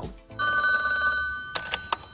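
A landline telephone rings once, for about a second, followed by three quick clicks as an answering machine picks up.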